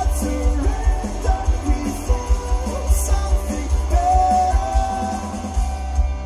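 Live rock band playing: electric guitars, bass guitar and drums, recorded from the crowd, with a heavy, booming low end.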